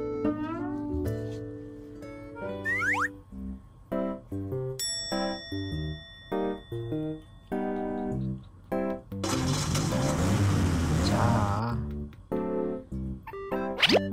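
Playful children's-style background music, short plucky notes, with cartoon 'boing' sound effects sliding up and down in pitch in the first few seconds. About nine seconds in, a louder rough, noisy stretch of two to three seconds sits over the music.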